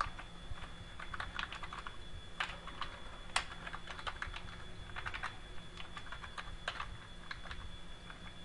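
Computer keyboard typing in short runs of keystrokes, with one sharper key click a little after three seconds in.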